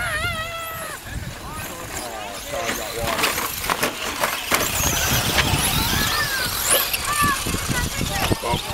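Electric 2wd RC trucks racing on a dirt track. From about three seconds in, thin high motor whines rise and fall, with the clatter of tyres and landings, over the voices of people nearby.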